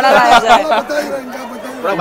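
Men talking close by, with chatter from others around them; louder for the first moment, then softer.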